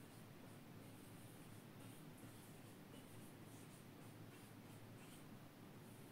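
Faint strokes of a marker pen writing on a whiteboard, soft short scratches over near-silent room tone.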